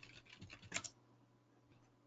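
Faint typing on a computer keyboard in the first second, then near silence.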